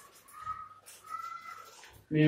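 Faint, drawn-out high calls from an animal in the background, a few in a row with short gaps between them.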